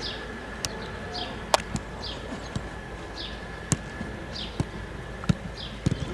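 Football kicked repeatedly in a training drill: sharp, irregularly spaced thuds of boots striking the ball, about eight in all. A bird's short falling chirps repeat roughly once a second behind them.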